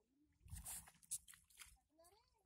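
Faint splashing and sloshing of paddy water as rice seedlings are pushed by hand into the flooded mud, in a few short bursts, the strongest about half a second in.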